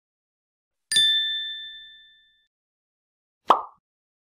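Intro-animation sound effects. About a second in, a bright ding rings out and dies away over about a second and a half; near the end comes one short pop.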